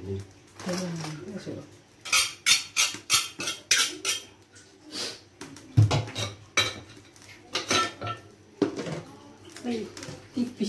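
Metal pots, bowls and utensils being handled in a stainless-steel sink, clattering and clinking in two bursts of quick sharp knocks, one about two seconds in and another from about six seconds in.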